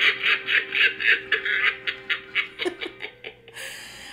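White animatronic Halloween pumpkin playing its recorded cackle: a rapid run of laugh pulses over a steady held tone, dying away about three seconds in.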